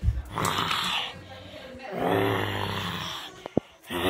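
A child's voice making rough, snore-like monster growls: two long ones, the second about two seconds in, followed by a sharp click near the end.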